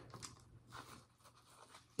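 Near silence: room tone with two faint, brief rustles from hands twisting a cord handle on a small craft cup.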